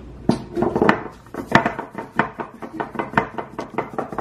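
Repeated sharp knocks and clacks, about three or four a second and irregular, of a block of ice being struck in a glass bowl to break loose the phone frozen inside it.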